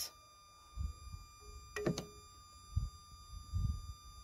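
Faint handling noises: a few dull low thumps and one sharp click with a brief ring about two seconds in.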